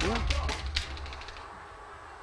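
A few scattered hand claps that thin out and stop about a second in, over a steady low hum.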